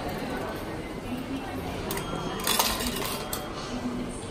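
Coins and a ticket dropping into a train-station ticket machine's change tray: a short clinking rattle about two and a half seconds in, with a few single clicks before and after, as the machine pays out change. Faint background chatter.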